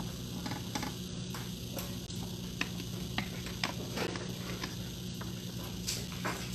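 Meeting-room background noise: a steady low hum with scattered small clicks and rustles, several of them close together in the middle of the stretch.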